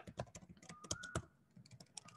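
Computer keyboard being typed on: a quick run of key clicks, with short pauses between them.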